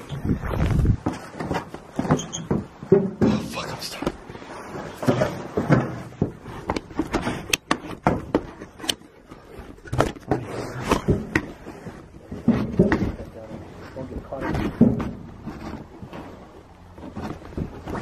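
Handling noise from a handheld camera pressed against clothing: jacket fabric rustling and brushing over the microphone, with a few sharp knocks about halfway through and low, indistinct voices.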